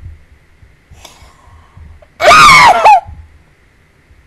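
A woman's loud, high-pitched squeal, under a second long, starting about two seconds in. Its pitch wavers and dips, then jumps up at the end, loud enough to overload the microphone. A faint breathy sound comes a second before it.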